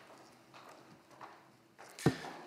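A few faint footsteps on a hard floor over quiet room tone.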